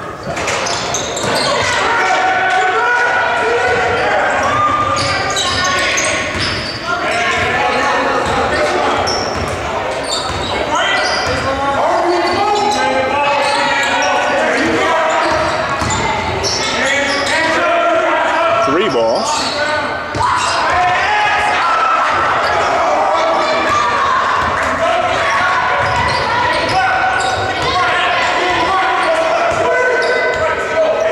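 Basketball game sound in a school gym: the ball bouncing on the hardwood floor, with players, coaches and spectators talking and shouting throughout, all echoing in the large hall.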